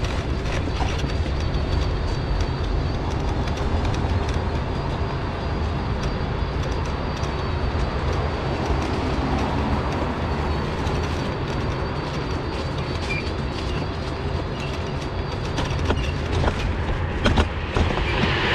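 Electric mobility scooter running steadily along a wet, slushy path: a continuous motor hum and wheel rumble, with rattling and a few sharp clicks near the end.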